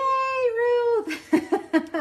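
A woman's voice: one long, high, drawn-out exclamation lasting about a second, then a few short bursts of laughter.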